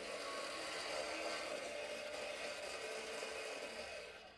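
12 V DC gear motor of a homemade mini pottery wheel running steadily, turning the wooden wheel with a small clay pot on it, with a faint even whir.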